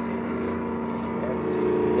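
Motorboat engine idling, a steady, even hum with no change in pitch.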